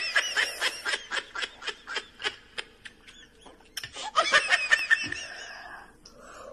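Laughter: a long run of short, high-pitched laughing bursts that slow down over the first three seconds, then a second fit of laughter about four seconds in.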